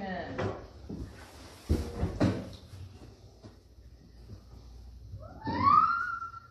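Two short knocks about half a second apart, then a high, rising voice held for about a second near the end: a young child's squeal.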